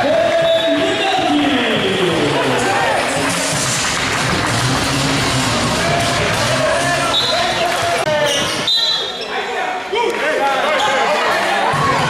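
A handball bouncing on a hardwood sports-hall floor during play, with people shouting in the reverberant hall.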